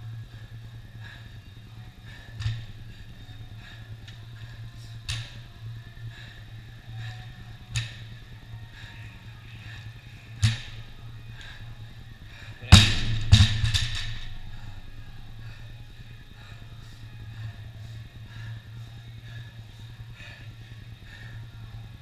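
A few lighter knocks about every two and a half seconds, then a loud crash as a loaded barbell with bumper plates is dropped from overhead onto the rubber gym floor and bounces a few times before settling.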